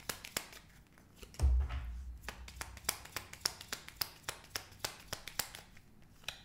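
Tarot deck being shuffled by hand: a run of quick, uneven card clicks, with one low thump about a second and a half in.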